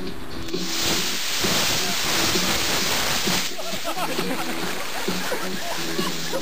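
Four E-class model rocket motors firing together with a loud rushing hiss that starts about half a second in and cuts off suddenly about three seconds later, over background music.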